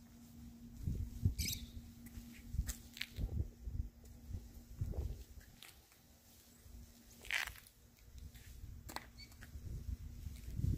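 Faint footsteps on asphalt and handling noise from a hand-held camera: irregular low thumps with a few sharp clicks and a faint steady hum under the first half.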